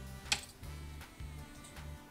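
Soft background music, with a sharp click about a third of a second in and a few fainter ticks from metal knitting needles working stitches.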